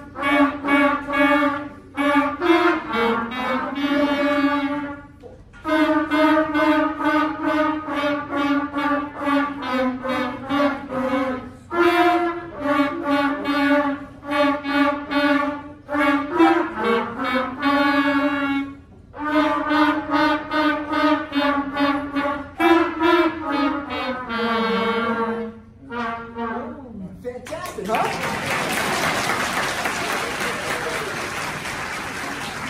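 A first-year school wind ensemble of flutes, clarinets and trumpets playing a tune in phrases with short breaks. The playing stops near the end and applause begins.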